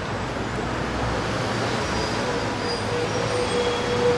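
Steady low background rumble, like distant traffic, with a faint held tone coming in over the second half.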